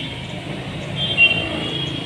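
Outdoor street ambience: a steady rumble of passing road traffic, with a few short high-pitched chirps or squeals about a second in.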